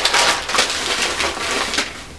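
Plastic shopping bag rustling and crinkling loudly as hands rummage in it and pull out an item. The rustling fades out near the end.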